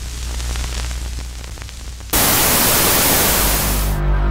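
Retro TV/VHS effect: a low steady hum with faint crackle, then about two seconds in a loud hiss of television static cuts in and stops abruptly near the end.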